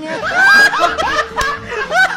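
Two men laughing, loudest about half a second in.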